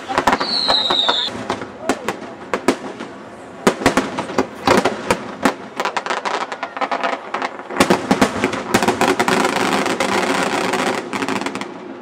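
A fireworks display: a whistle that falls slightly in pitch in the first second, then a rapid, irregular series of sharp bangs from bursting shells. From about eight to eleven seconds comes a dense stretch of crackling from glittering stars.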